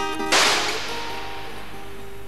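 Strummed acoustic guitar music, cut by a single loud, sharp crack about a third of a second in, whose hiss fades away over about a second while the guitar notes ring on.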